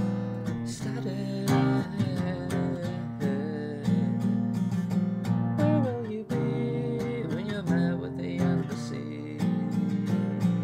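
A song: steadily strummed acoustic guitar with a voice singing a slow, wavering melody over it.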